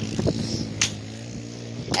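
Four-wheeler (ATV) engine idling steadily, with a couple of brief clicks over it.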